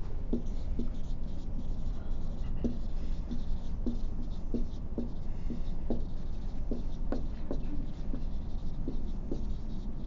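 Writing by hand: a run of short, irregular strokes and taps, about one or two a second, over a steady low room hum.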